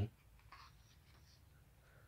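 Near silence in a pause of a man's narration, with the end of a spoken word at the very start and a faint, brief noise about half a second in.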